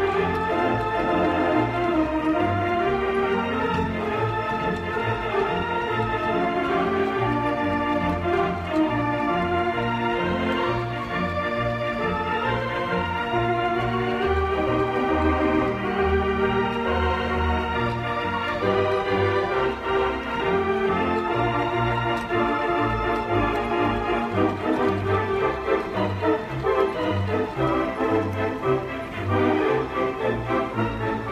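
A 1937 Compton theatre pipe organ playing a lively tune, full sustained chords over a bass line that pulses in a steady on-off rhythm.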